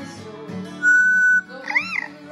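A yellow-headed Amazon parrot whistles over two strummed acoustic guitars: one loud, steady held note about a second in, then a short whistle that rises and falls near the end.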